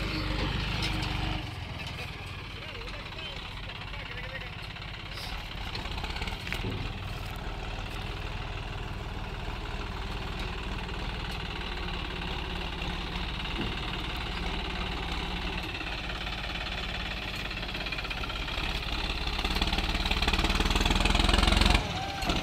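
John Deere 5310 tractor's three-cylinder diesel engine running steadily under load while pulling a loaded trolley, growing louder over the last few seconds as it comes closer.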